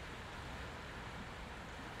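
Faint, steady rush of a shallow river flowing over rocks.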